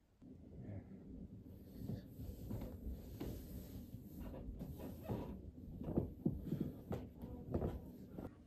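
Footsteps going down wooden stairs, heard as a series of irregular low, dull thuds that start about two seconds in and grow louder toward the end.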